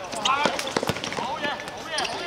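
Players' voices calling out on an outdoor futsal court, with a few sharp knocks from the ball being kicked and from shoes on the hard court, two of them close together just under a second in.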